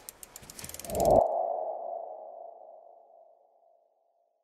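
Logo-animation sound effect: a quick run of sharp ticks, then about a second in a single ringing tone that swells and fades away over about two seconds.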